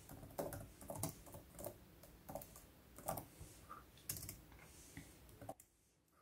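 Soft, irregular key clicks of typing on a Surface Pro 7 Type Cover keyboard, stopping shortly before the end.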